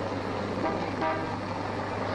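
Street traffic with car horns tooting briefly, over a steady low hum.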